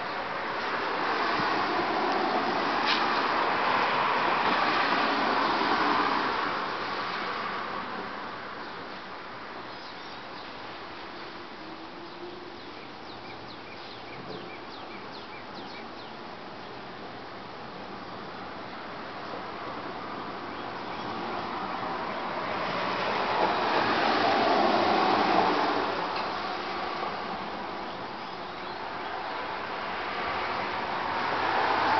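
Two cars passing on a wet street, each a tyre hiss that swells over a few seconds and fades, one near the start and another about twenty-three seconds in, over a steady background hiss.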